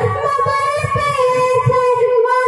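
A young girl sings a Bengali Islamic gazal into a microphone, holding one long, wavering note. Low beats sound irregularly underneath.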